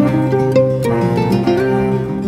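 Instrumental trio music: two acoustic guitars picking a quick melody over a bowed cello holding a low note.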